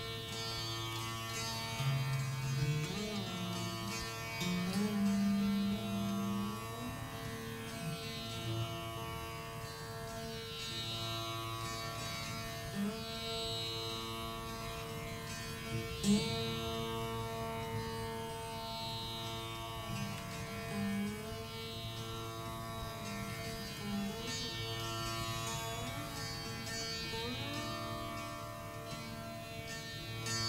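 Rudra veena playing a slow, unmetered alap in Raga Malkauns: long sustained notes with slow gliding pitch bends over a steady drone. A sharp pluck about sixteen seconds in is the loudest note.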